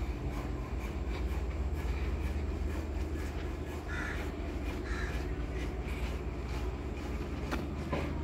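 Outdoor ambience: a steady low rumble throughout, with two short bird calls about four and five seconds in.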